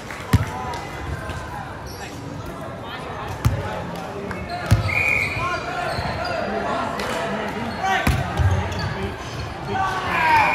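A volleyball being hit and bouncing on a hardwood gym floor: four sharp thuds, echoing in a large hall, over a steady babble of players' voices.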